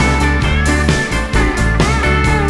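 Country-rock band playing live, guitars to the fore over a steady drum beat.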